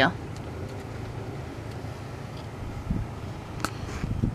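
Steady low hum of a Honda car's engine idling, heard inside the cabin, with a single sharp click a little after three and a half seconds.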